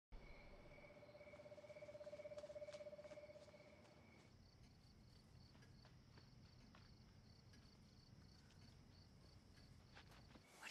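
Faint night ambience of crickets chirping: a rapid trill for the first four seconds, then a high chirp repeating about three times a second.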